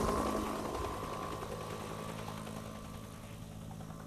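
A steady engine drone from a virtual-reality combat simulation's soundtrack, played over a hall's speakers, fading slowly away.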